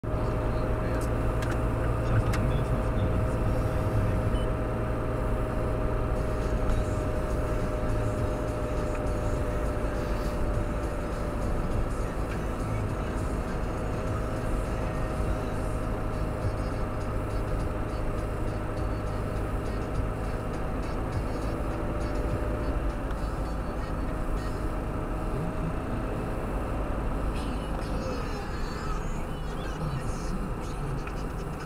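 Car cabin driving noise: a steady engine hum and tyre-on-road rumble while cruising, with a thin steady whine that fades out near the end.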